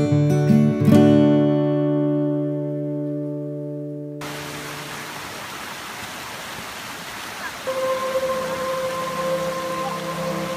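Acoustic guitar music ending on a chord that rings out, then, about four seconds in, a sudden switch to the steady rush of a small rocky mountain creek. Near the end a held musical tone comes in over the water.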